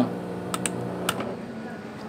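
Power-strip switches clicking as they are pressed off: a few sharp clicks between about half a second and a second in. Under them, a steady hum from the laser engraver's exhaust fan and air pump fades gradually as they are shut down.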